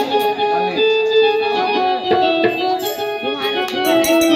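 Live Indian ensemble music: an electronic keyboard plays a melody of held notes over dholak hand-drumming.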